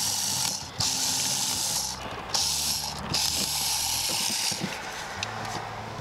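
Screwdriver turning a mounting screw into a GFCI outlet's strap, in four scraping turns of about a second each with short pauses between.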